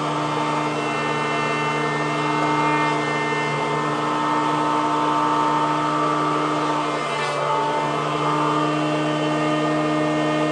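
Electric benchtop planer running steadily with a constant motor and cutterhead whine, as a two-by-four is fed across it to plane one face flat. The cutting noise shifts a little around three and seven seconds in.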